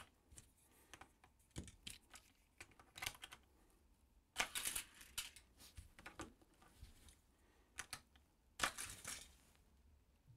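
Faint clicking and tapping of hard plastic as a Hot Wheels toy track launcher and die-cast cars are handled, with two louder, brief clattering bursts about four and a half seconds in and near the end.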